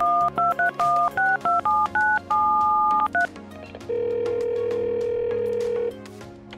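Telephone keypad dialing a number: about ten quick two-tone DTMF beeps, then a single steady ringing tone that the call is going through lasts about two seconds.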